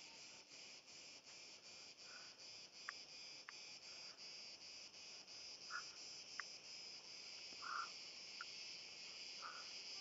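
Faint, steady chirping of crickets, a high trill pulsing a few times a second, with a few soft small knocks.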